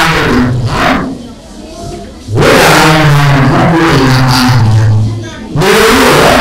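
A man speaking Burmese into a handheld microphone, with a short pause a little after a second in.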